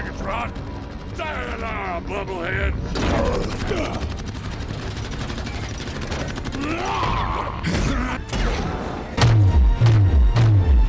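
Film battle sound mix of sci-fi robot weapons firing in bursts of shots and impacts, with sweeping mechanical whines and a music score. A heavy pulsing low beat comes in near the end.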